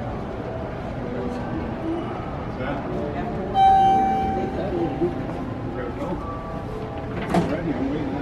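A single electronic elevator chime about three and a half seconds in, one clear tone that fades over about a second, over a background murmur of voices.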